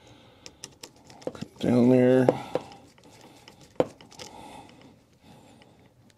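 A screwdriver working the terminal screws of a household wall outlet: small scattered clicks and scrapes of metal, with one sharper click a little before four seconds in. About two seconds in, a man gives a short hum or grunt at one steady pitch, the loudest sound here.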